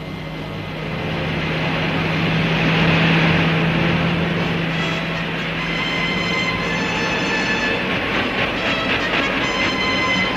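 Rocket braking thrust in a cartoon sound effect, as the rocket descends tail-first to land: a loud rushing noise that swells over the first three seconds over a steady low hum. From about five seconds in the hum fades and the rush turns rapid and fluttering.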